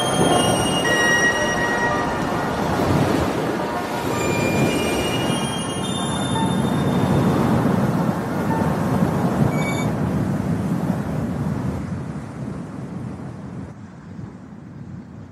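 A steady rumbling noise with brief high squealing tones scattered through it, fading out over the last few seconds.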